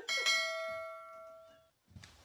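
A single bell chime sound effect, struck once and dying away over about a second and a half.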